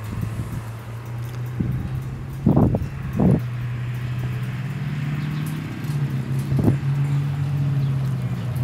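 Wind buffeting the microphone in three gusts, two close together about two and a half seconds in and one later on, over a steady low hum.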